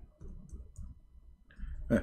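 Computer keyboard keys clicking as someone types, a few light, scattered keystrokes.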